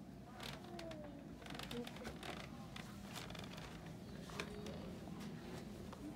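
Folding pull wagon rolling over a hard floor, with scattered light clicks and rattles over a steady low hum.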